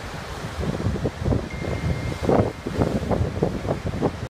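Wind buffeting the microphone in irregular gusts over the steady wash of ocean surf breaking on rocks.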